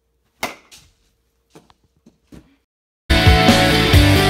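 A bat striking a baseball off a tee: one sharp crack about half a second in, a softer knock right after, and a few faint knocks over the next two seconds. Then loud rock music starts suddenly near the end.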